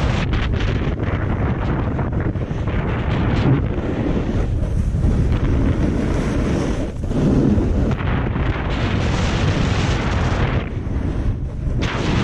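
Wind buffeting an action camera's microphone during a fast descent on snow, with the hiss of skis or a snowboard scraping over packed snow swelling and fading through the turns.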